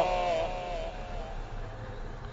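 A man's voice at the end of a phrase of Quran recitation, the last held, wavering note dying away over about the first second and a half. After it, only faint hiss remains.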